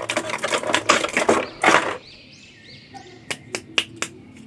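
Clear plastic blister tray crackling and crinkling as a toy action figure is pulled out of it, for about two seconds; after that it goes quieter, with a few light plastic clicks.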